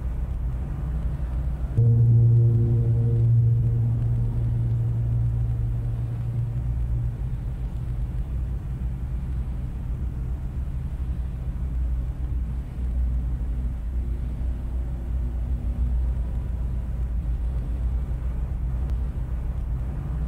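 Solo piano in its lowest register. A deep bass note is struck about two seconds in and left to ring for several seconds over a continuous low rumble.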